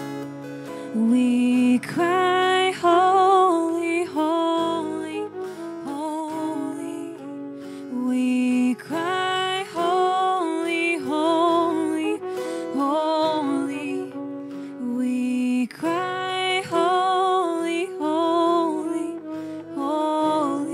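A woman singing a slow worship song over acoustic guitar accompaniment, in phrases of long held notes with a slight waver.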